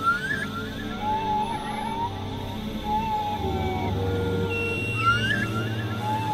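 Experimental electronic synthesizer drone music: a low steady drone under repeating gliding tones. A quick rising swoop comes near the start and again near the end, and a wavering mid-pitched tone comes and goes between them.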